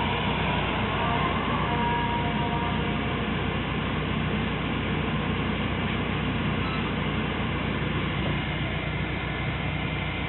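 Steady in-cabin running noise of a BMW E36 with the air conditioning on: the climate-control blower pushing air through the dash vents, over the low hum of the idling M43 four-cylinder engine.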